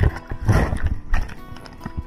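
Seawater splashing and knocking against a chest-mounted action camera as whitewash washes over a surfer lying on his board. There is a run of irregular wet thumps, the loudest right at the start and again about half a second in. Background music plays steadily underneath.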